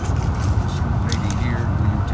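Steady low outdoor rumble with indistinct voices of people standing and talking nearby.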